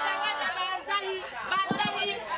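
Voices talking and calling out over one another: crowd chatter.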